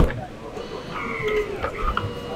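A motorhome entrance door latching shut with a sharp click, then a faint, steady whine from the small electric motor of its closing mechanism.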